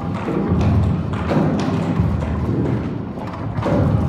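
Orgue de bois, an instrument of long suspended wooden arcs and cords, being played: deep booming wooden resonances with irregular knocks and thuds about every half second.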